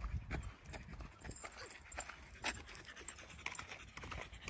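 Faint footsteps on a gravel road, heard as scattered light scuffs and clicks, over a low rumble of wind on the microphone.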